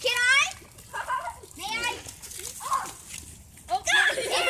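Children's excited voices: a high squeal right at the start, then more shrieks and calls.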